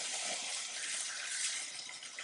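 Chicken breasts sizzling on a hot, oiled cast iron grill pan, a steady hiss.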